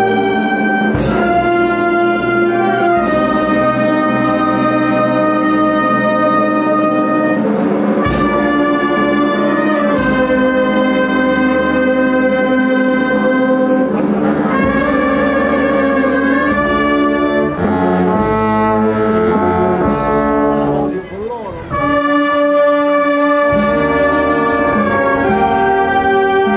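A brass band playing a slow, solemn march in long held chords, with a brief drop in loudness about three quarters of the way through.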